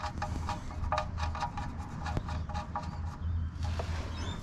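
Rapid light metallic ticking, about four or five ticks a second, as a steel sump plug with an aluminium washer is spun into the oil pan drain hole by hand. The ticking thins out near the end, over a low steady hum.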